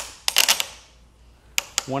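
Plastic ratcheting lockdown strap on a Yakima spare-tire bike rack cradle clicking as it is pulled tight over a bicycle frame. A quick run of clicks comes in the first half second, then two more clicks about a second and a half in.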